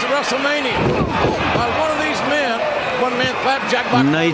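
A wrestler slammed down onto the ring mat, one heavy thud about a second in, under steady voices.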